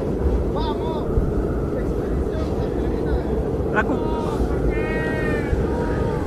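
Mountain wind buffeting a phone microphone: a steady low rumble with no break.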